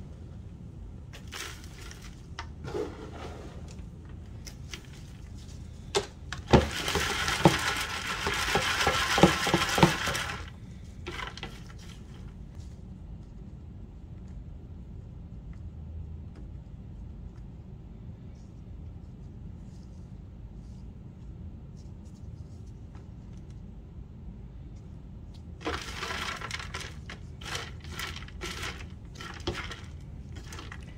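Dried-out worm-bin compost rubbed and worked across a wire-mesh sifter by a gloved hand: scattered crackles and rustles, with one loud stretch of scraping and rattling about four seconds long a few seconds in, then a long quiet stretch before the crackly rustling picks up again near the end.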